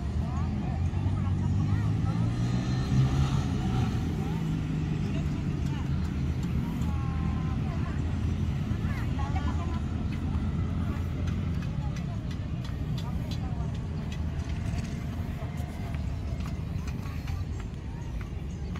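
People's voices talking in the background over the steady low running of a motor vehicle engine, loudest about three seconds in.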